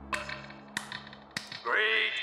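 Three sharp taps, about half a second apart, heard through a horn loudspeaker, like a microphone being tapped before an announcement. A man's voice then starts over the PA as background music fades out.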